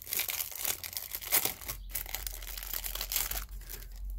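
Packaging crinkling and rustling as it is handled, in quick irregular crackles, with a brief pause a little under halfway through.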